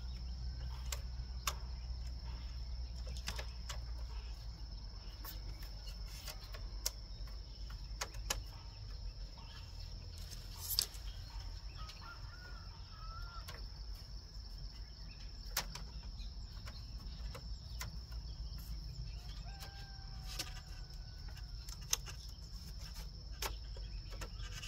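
Thin bamboo strips clicking and knocking now and then as they are woven into a bamboo lattice wall panel, over steady outdoor background noise with a constant high-pitched drone and a few faint bird calls.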